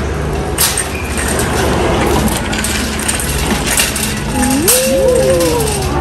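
Shopping cart rolling and rattling over a concrete store floor, with a few sharp clinks and a steady low hum underneath. A short rising-and-falling tone comes about five seconds in.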